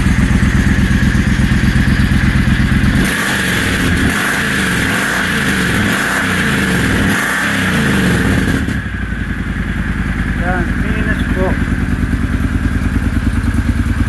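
Triumph Thunderbird Storm's big parallel-twin engine running at idle through a freshly fitted Black Widow de-cat exhaust, which is being checked for leaks. About three seconds in, the sound thins and wavers for roughly six seconds, then settles back to a steady idle.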